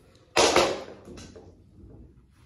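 A single sharp knock close to the microphone about half a second in, fading over roughly half a second, followed by faint rustling.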